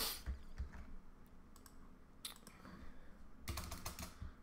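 Computer keyboard keystrokes and clicks while copying and pasting code: a few scattered single clicks, then a quick run of several keystrokes near the end.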